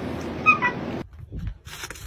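Shiba Inu giving two short, high, squeaky calls about half a second in, over a steady background hum.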